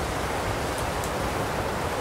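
Steady rushing hiss, like wind, with no distinct events.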